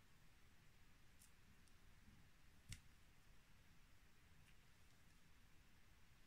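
Near silence with a few faint clicks from hand crocheting, a metal hook working through yarn; the clearest click comes a little before halfway through.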